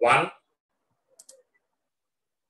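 Two quick clicks about a second in, from the pointing device that turns the page of the digital whiteboard notes.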